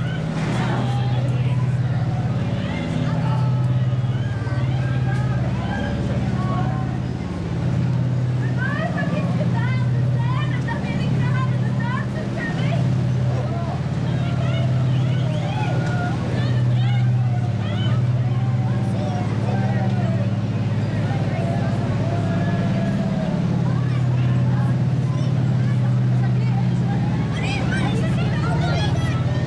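Deep, steady engine drone of a restored WWII tank running close by, swelling and easing slightly, under the chatter of a crowd.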